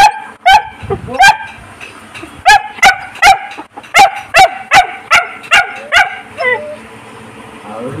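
German shepherd puppy barking a run of about a dozen sharp, high-pitched yaps, roughly two a second, which die away about six seconds in.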